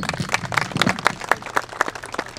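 Audience applauding: many scattered, irregular hand claps. A single low thump at the very start stands out above the claps.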